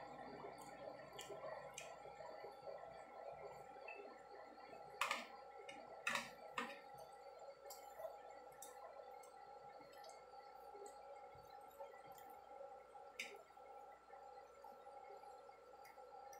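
Metal spoon and fork clinking and scraping on a ceramic plate of rice, a few sharp clinks, the loudest about five and six seconds in and one more near the thirteen-second mark, over a faint steady hum.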